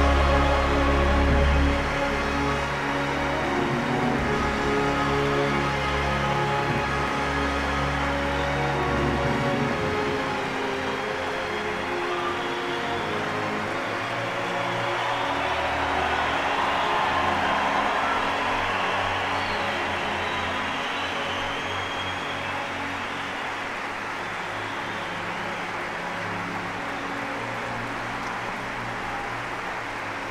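Orchestral music played together with long, steady audience applause. The full, low-pitched music thins out about ten seconds in, and the applause carries on over quieter music.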